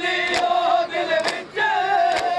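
Men chanting a mourning lament together, sung on held notes, while the crowd strikes their bare chests in unison with the palms in matam, one sharp slap about every second.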